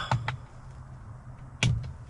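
A man stirring awake in a sleeping bag: the tail of a groan, a couple of small clicks, then a sharp click with a short throaty sound about one and a half seconds in, over a faint steady low hum.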